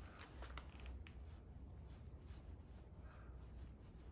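Faint scratchy rubbing with light clicks, a cloth rag wiping a small corroded steel test piece.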